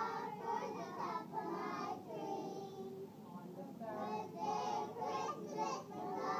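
A class of three-year-old children singing a song together, with a short lull midway before the singing picks up again.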